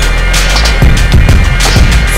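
A skateboard rolling on concrete, with the clack of the board, heard under a loud hip-hop soundtrack with a steady beat.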